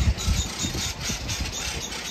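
An animal's rapid, even chattering call, about six or seven short high clicks a second. Low wind rumble on the microphone comes near the start.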